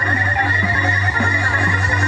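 Live music from a small keyboard-led trio, with a steady low held note under wavering higher tones.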